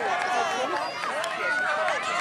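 Several voices calling and shouting over one another, mostly high-pitched, in a crowd of sideline spectators and players at a youth soccer game.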